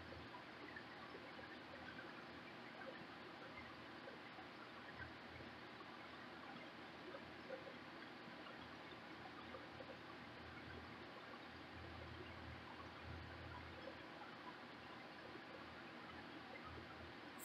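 Very faint stirring of paint in a can with a wooden stir stick, soft liquid swishing barely above room tone.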